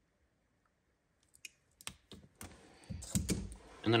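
Short sharp clicks and small handling rustles from a wire-stripping tool closing on thin insulated wires and pulling the insulation off, starting about a second and a half in and growing busier near the end.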